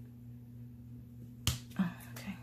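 A single sharp tap about one and a half seconds in, as a small hand tool is put down on a desk beside a spiral planner, over a low steady room hum.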